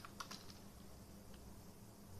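Quiet computer keyboard typing: a few quick key clicks in the first half second and one more a little past the middle, then near silence.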